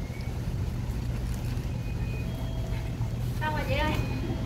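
Steady low outdoor rumble, with a person's voice speaking briefly near the end.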